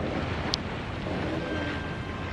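Steady rushing of wind and sea noise on an outdoor microphone, with one brief sharp click about half a second in.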